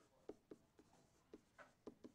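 Faint taps and short scratches of a stylus writing digital handwriting, a handful of brief strokes against near silence.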